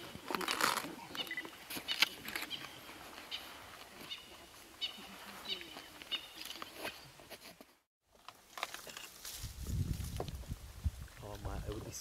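Low, indistinct voices of onlookers under outdoor ambience, with scattered short high chirps and small clicks; the sound cuts out completely for a moment about eight seconds in.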